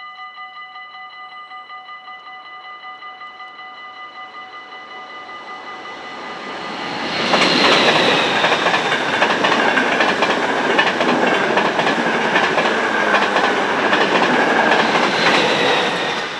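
Dutch level-crossing bell ringing rapidly and steadily. An electric passenger train approaches from about six seconds in and passes loudly from about seven seconds in, its wheels clattering over the rails. It fades near the end while the bell keeps ringing.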